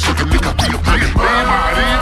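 Slowed hip-hop beat with DJ turntable-style scratching, quick pitch sweeps over heavy bass. Just over a second in, the bass drops out and a sustained chord starts a new section.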